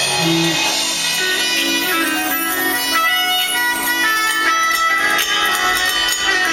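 A smooth-jazz band playing live: a lead melody of long held notes over electric bass and drums, the opening of a song.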